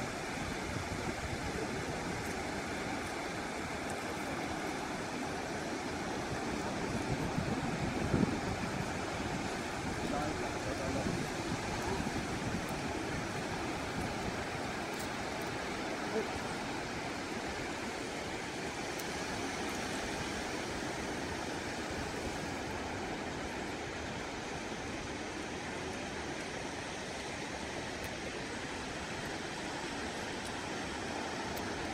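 Steady wash of surf breaking on a beach, with a brief louder stretch about eight seconds in.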